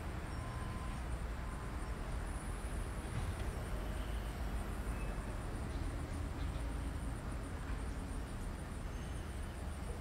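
Insects chirping in a fast, even, high-pitched pulse over a steady low outdoor rumble.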